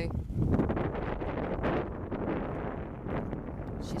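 Wind buffeting the microphone outdoors, a gusty rushing noise with no clear engine tone above it.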